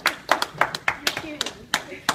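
Hands clapping in applause: sharp, slightly uneven claps about three a second.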